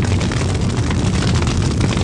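A large pyre fire burning: a steady low roar with continual crackling.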